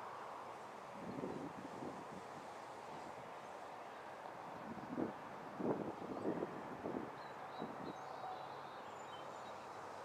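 Wind buffeting the microphone in irregular gusts, about a second in and again from five to seven seconds in, over a steady outdoor hiss.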